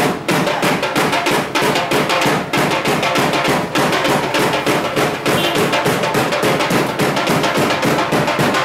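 Music with fast, dense drumming, the drum strokes coming several times a second without a break, with other instruments holding tones beneath.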